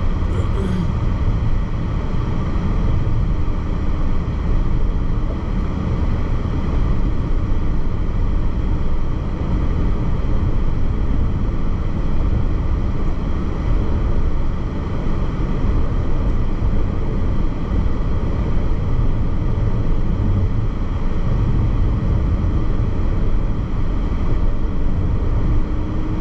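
Steady road and tyre noise with engine hum inside a moving car's cabin at highway speed.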